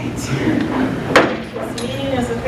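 A single sharp knock a little over a second in, heard over the shuffle of board members sitting back down at a wooden dais and settling their chairs.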